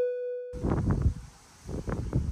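The last note of a short keyboard jingle dying away, then, half a second in, an abrupt cut to wind buffeting the microphone in uneven gusts.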